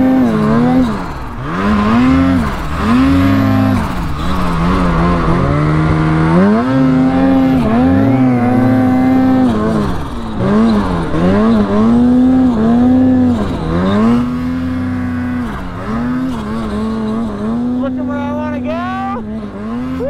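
Ski-Doo 850 two-stroke snowmobile engine running hard in deep powder, its revs rising and falling over and over as the throttle is worked. Near the end a second sled's engine comes in with quicker rises and falls in pitch as it passes close.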